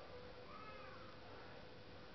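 A faint, short high-pitched call that rises and then falls in pitch, lasting about half a second and starting about half a second in, over a faint steady hum.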